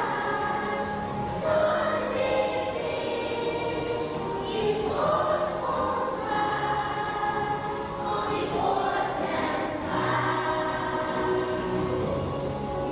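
Children's choir singing, with long held notes.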